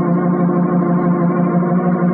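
Dramatic organ music holding sustained chords, with the chord changing near the end.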